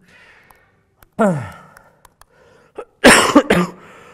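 A man coughing into his hand: two harsh coughs close together near the end, after a short falling vocal sound about a second in.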